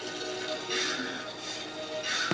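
Music from a television soundtrack playing in the room, with two brief hissing swells, one just under a second in and one near the end.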